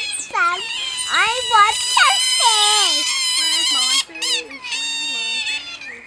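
A group of Asian small-clawed otters calling together with high, wavering squeals and chirps, many voices overlapping almost without a break. These are begging calls for fish, which the onlookers call crying.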